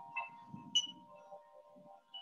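Wind chime ringing, with several metal tones at different pitches struck irregularly and overlapping as they ring on, over a low rumbling noise.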